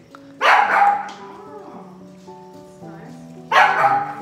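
Two loud dog barks about three seconds apart, over background music.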